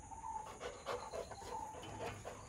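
Rottweiler panting through an open mouth in quick, regular breaths.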